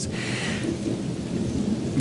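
Steady rushing noise with a low rumble underneath, like rain and thunder.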